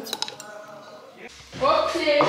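A utensil clinking and scraping against a frying pan while fried potatoes are served onto a plate, with a few sharp clinks right at the start.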